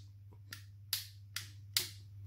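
Four sharp clicks about half a second apart from the gold aftermarket Armor Works ambidextrous thumb safety on an EMG STI Combat Master Hi-Capa airsoft pistol being flicked on and off.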